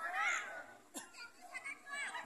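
A shouted call from the football pitch: one high, rising-and-falling voice near the start, over faint outdoor background noise. A single sharp knock comes about a second in.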